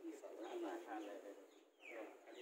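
Birds calling, with short falling whistles near the end, over low murmured voices.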